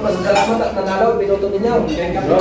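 Dishes and cutlery clinking, with a few sharp clicks, over the overlapping chatter of a dining room full of people.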